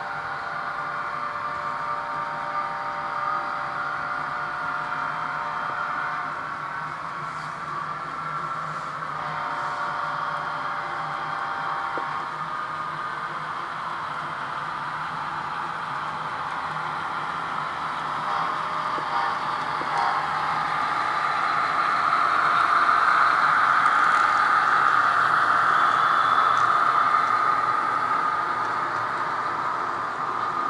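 HO scale model freight train running past: the diesel model's motor whirring and the cars' wheels rolling on the rails. It grows louder about two-thirds of the way through as the cars pass closest.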